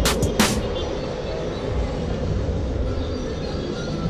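Surfskate wheels rolling on asphalt: a steady rumble, with a few sharp clicks in the first half second. Music plays underneath.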